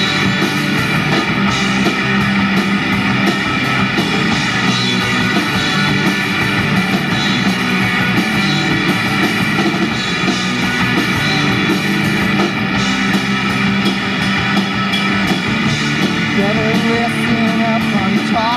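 Live rock band playing an instrumental stretch: electric guitar over a drum kit with regular cymbal hits. Near the end a voice comes in singing.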